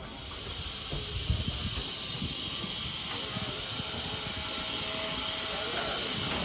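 A steady high hiss that starts suddenly and stays even, with a few low thumps in the first two seconds.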